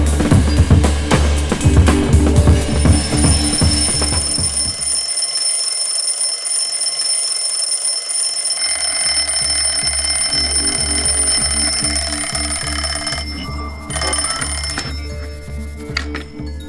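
Twin-bell alarm clock ringing with a steady high metallic ring from about three seconds in, breaking off near the end. Background music with a regular drum beat plays underneath.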